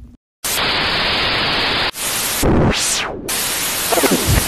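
Loud burst of static hiss, a transition sound effect, starting after a brief dead silence. About two seconds in it changes, with sweeps falling and rising in pitch through the noise.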